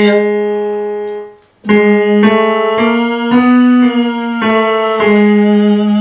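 Electric keyboard playing a chromatic scale one semitone at a time, about two notes a second, stepping up and then back down, with a brief break early on.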